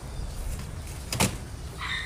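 A single sharp tap about a second in, over a low, steady background rumble.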